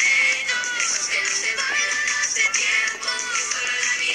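Reggaeton song with a sung vocal line, playing continuously; it sounds thin, with little bass.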